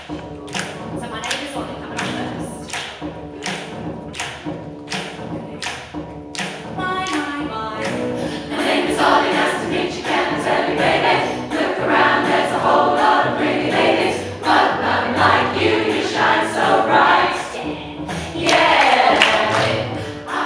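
Amateur rock choir singing together over a steady beat of sharp knocks. From about eight seconds in, the singing grows louder and fuller.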